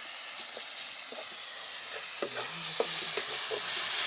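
Prawn and tomato masala sizzling in an iron kadai while a metal spatula stirs it, scraping and knocking against the pan. The sizzle gets louder toward the end as the stirring goes on.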